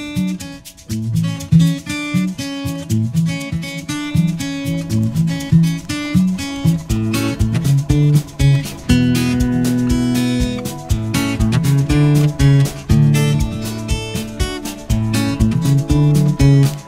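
Background music led by strummed acoustic guitar in a steady rhythm.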